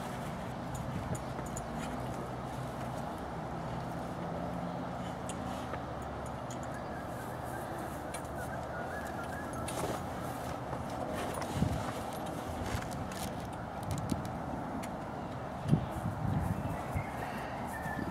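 Light knocks and clicks of metal awning poles and spreader bars being handled and fitted, with a few sharper knocks in the second half, over steady outdoor background noise.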